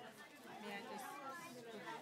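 Faint, indistinct background chatter of several people talking.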